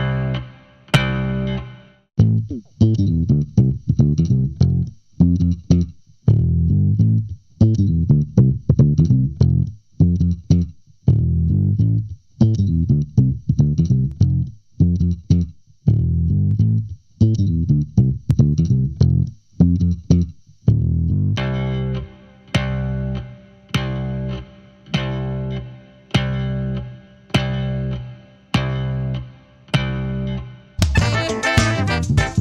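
Electric bass guitar line played back through a plugin chain of SVT Classic bass amp, parametric EQ, White 2A compressor and chorus: a rhythmic run of plucked, decaying notes. About 21 seconds in the notes turn noticeably brighter, with more edge in the upper range.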